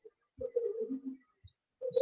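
A faint low cooing call from a bird, heard once and dropping in pitch partway through.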